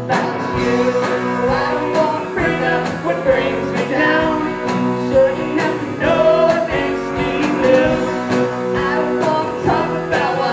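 A live band plays a song: a male voice sings over electric guitars and bass, with a steady drum beat.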